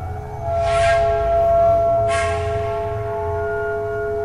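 Experimental ambient soundscape music: two struck, bell-like metallic tones about a second and a half apart, each ringing on in long steady overtones, over a continuous low rumble.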